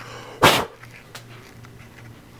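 One short, loud bark-like sound about half a second in, over a faint steady hum.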